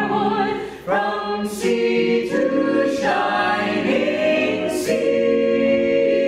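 An a cappella vocal ensemble of mixed men's and women's voices singing in close harmony, holding chords that change every second or so. There is a short break for breath just under a second in.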